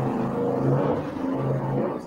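A man's voice holding a long, low hesitation sound at a near-level pitch, drawn out for a few seconds without words.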